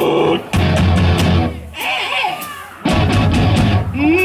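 Live heavy rock band playing: drums, electric guitars, bass and keyboard. About a second and a half in, the band breaks off into a quieter gap filled with sliding tones, then comes back in at full level near the three-second mark.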